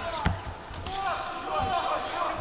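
Dull thuds of boxing gloves striking in a clinch, the sharpest about a quarter second in, with voices in the arena behind.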